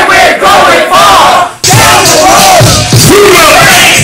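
A rapper shouts into a microphone through the PA while the crowd yells along. The sound is loud and overdriven on the phone recording, with a brief break about one and a half seconds in.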